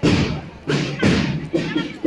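A marching drum beating a steady procession rhythm: a strong beat about once a second, each with a lighter beat just before it, over a crowd's murmur.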